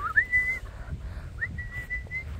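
A person whistling two notes. Each slides up and then holds steady at a high pitch, and the second is held longer than the first.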